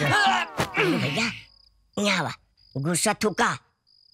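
A cricket trills as a thin, steady, high tone that comes and goes, starting about a second and a half in. It sits under short bursts of voices that carry no clear words.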